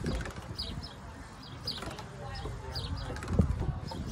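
A bird chirping repeatedly: short, high, downward-slurred notes about once a second, over a low rumble, with a thump about three and a half seconds in.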